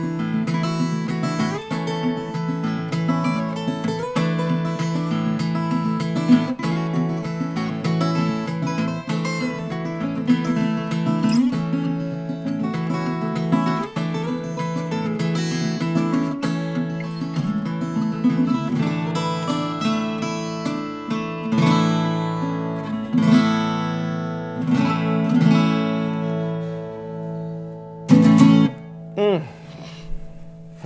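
Two three-quarter-size Santa Cruz Firefly acoustic guitars with Brazilian rosewood back and sides, one with a cedar top and one with a sinker redwood top, played together as a duet of picked notes and strummed chords. The piece ends on a final strummed chord shortly before the end.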